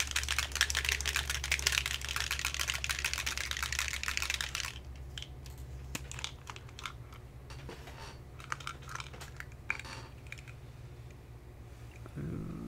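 Foam ink-blending brush scrubbed quickly over cardstock on a craft mat: a dense run of fast, light brushing strokes for about five seconds. After that come scattered light clicks and taps as a small bottle with an applicator cap is picked up and handled.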